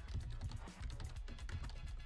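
Computer keyboard typing, a rapid run of keystroke clicks, over low background music.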